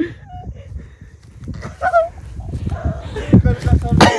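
Rumbling handling noise from a microphone rubbing against clothing, with a couple of dull thumps a little after three seconds, during a playful scuffle. Short faint vocal sounds come through now and then.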